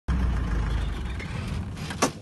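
A motor vehicle engine running with a low rumble that slowly eases off in level.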